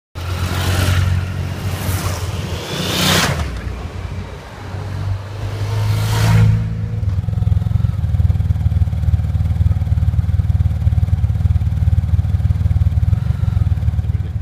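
Motorcycles riding past one after another, four passes in the first six and a half seconds. From about seven seconds a motorcycle engine idles steadily close by, with a fast even pulse.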